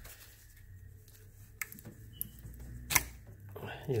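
A few light clicks as the plastic brake vacuum hose connector is twisted and pulled off the vacuum pump of a 2012 Mercedes-Benz GL350 BlueTec, the sharpest click about three seconds in, over a low steady hum.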